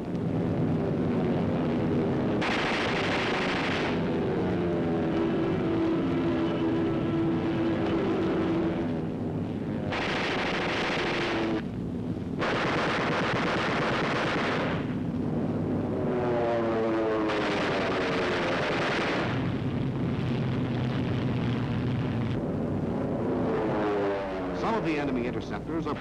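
Aircraft engines rising and falling in pitch as fighters dive and climb, broken by about four long bursts of machine-gun fire, on a 1940s film soundtrack.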